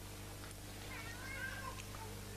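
Steady low electrical hum with hiss from an old recording, and faint high wavering sounds about a second in, too faint to name.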